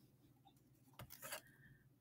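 Near silence: room tone, with a few faint clicks about a second in.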